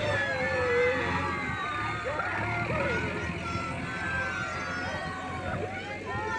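Diesel engine of a JCB backhoe loader running steadily, with people's voices over it.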